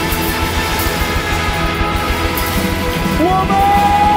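Live band music with drums and guitars playing; near the end a high note slides up and is held.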